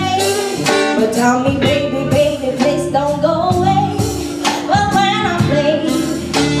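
A woman singing with a live jazz-pop band, backed by electric bass and a drum kit that keeps a steady beat of sharp hits.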